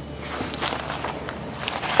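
Thin paper napkin rustling and crackling as its plies are peeled apart by hand, the printed top layer separated from the backing. The rustle grows louder about half a second in, with many small irregular crackles.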